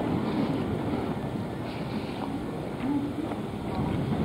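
Steady outdoor street noise with wind rumbling on the microphone, and a faint distant voice briefly about three seconds in.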